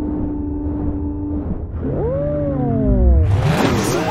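Cartoon sound effects: a steady held tone, then swooping tones that rise and fall from about two seconds in, and a burst of noise with crossing glides near the end.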